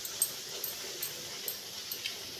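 A puri frying in hot ghee in a steel kadhai: steady sizzling with sharp little pops and crackles about twice a second as a slotted spoon presses it down.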